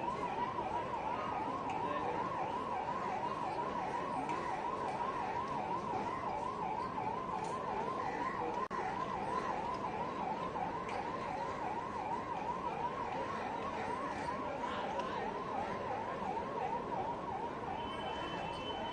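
An emergency-vehicle siren in a fast yelp, its pitch rising and falling about three times a second without pause, over the dense noise of a large crowd.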